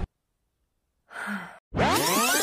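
A woman's short sigh about a second in, after near-total silence; music with sweeping tones starts just before the end.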